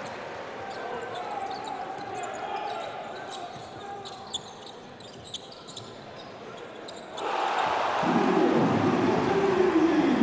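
Basketball game sound from the stands and court: crowd murmur with sneaker squeaks and ball bounces on the hardwood floor. About seven seconds in the crowd suddenly breaks into a loud cheer, with a long shout that rises and then falls in pitch.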